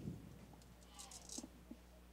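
Near silence: room tone under a steady low electrical hum, with faint distant voices and a few soft ticks about a second in.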